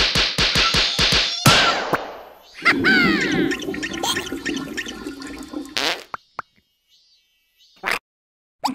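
Cartoon slapstick sound effects: a fast run of hits, about five a second, ending in one louder smack, then squeaky gliding character vocalizations and a long low buzzing sound that stops suddenly about six seconds in.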